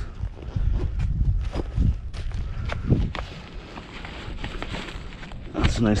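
Footsteps and scuffs on concrete over a low rumble, with scattered clicks and one sharper knock about halfway through as gear is handled.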